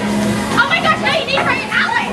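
Children chattering and calling out over background music.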